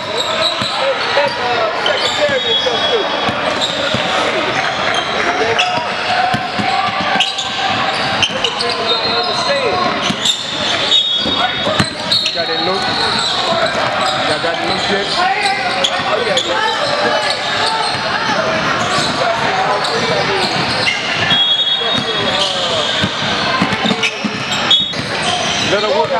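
Indoor basketball game: a basketball dribbling and bouncing on a hardwood gym floor over a steady hubbub of many voices from players and spectators, echoing in a large hall. Brief high squeaks, typical of sneakers on the court, come several times.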